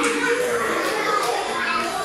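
A group of young children's voices calling out and chattering together in a classroom, with a children's song playing under them.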